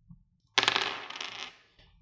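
A pair of six-sided dice rolled for a game, starting about half a second in as a rattling clatter of many quick clicks that dies away over about a second.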